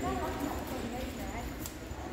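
Indistinct voices of people talking across a training gym, with a single sharp click near the end.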